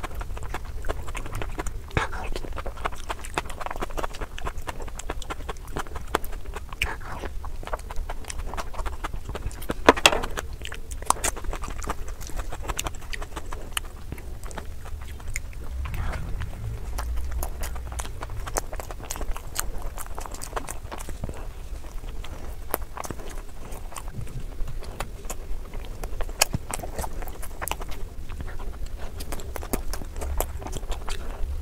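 Close-miked eating sounds played at three times normal speed: a rapid, dense run of wet chewing clicks and smacks as soft bread and fried puris dipped in gravy are eaten, with one louder click about ten seconds in.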